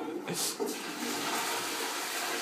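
Toilet flushing: a steady rush of water.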